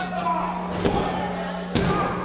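A wrestling referee's hand slapping the ring mat twice in a pin count, about a second apart, over background music.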